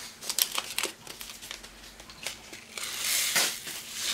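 Small plastic zip bag of diamond painting drills crinkling and clicking as it is handled and opened, then about three seconds in a brief rush of the drills pouring into a plastic tray.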